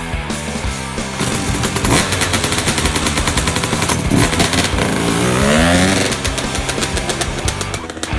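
Dirt bike engine starting after a kick about a second in, running with a fast crackling pulse and revving up with a rising pitch around five to six seconds in, over rock music.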